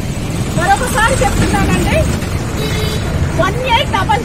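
A woman speaking in short phrases with a pause in the middle, over a steady low rumble of street traffic.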